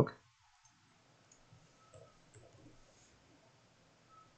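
A few faint computer keyboard keystrokes, about two seconds in, against near silence.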